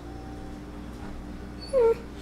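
Rhodesian Ridgeback whining: one short, loud, slightly falling whine near the end.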